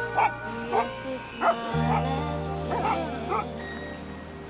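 A chocolate Labrador retriever barking, about six short barks spaced unevenly across a few seconds, over background music.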